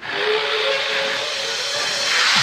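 A steady, loud hiss-like rush of noise with faint held tones beneath it.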